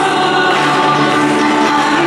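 A choir singing a sacred hymn, a steady flow of long held notes.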